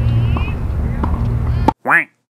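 A tennis ball being bounced on a hard court before a serve, a sharp tap about every two-thirds of a second over steady outdoor background hum. The sound cuts off suddenly near the end, followed by a brief voice fragment.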